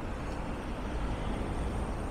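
Car traffic at a street intersection: an SUV driving past close by, its tyre and engine noise over a steady low street rumble, with a faint thin high whine.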